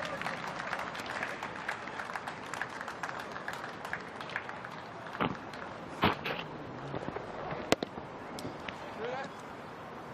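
Cricket-ground crowd ambience: a steady hum of distant spectator chatter with scattered small clicks, and one sharp knock late on.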